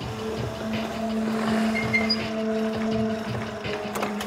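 Small motor scooter engine running with a steady hum as the scooter rides in.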